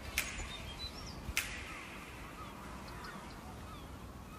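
Birds chirping faintly in scrubland, short quick calls rising and falling in pitch, over a low rumble of wind on the microphone. Two sharp clicks stand out, one just after the start and one about a second later.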